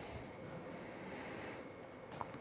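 A faint intake of breath, heard as a soft hiss lasting about a second, over low background noise in a pause between spoken news items.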